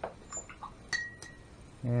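A paintbrush clinking against a glass jar several times, one tap about a second in leaving a short ringing note.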